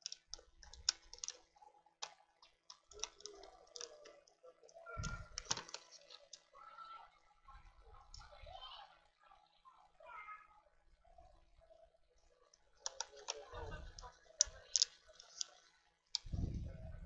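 Small-parts handling on a laptop: a 2.5-inch hard drive in its metal caddy and a screwdriver clicking and tapping against the laptop's plastic base. Scattered sharp clicks throughout, one louder knock about five seconds in, and a quick run of clicks near the end.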